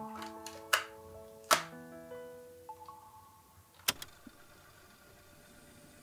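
Soft intro music of held notes that fades away in the second half, with three sharp plastic clicks from a portable cassette recorder's tape door and buttons being worked, two in the first two seconds and one near four seconds.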